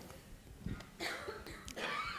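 A faint cough about a second in, over quiet room tone.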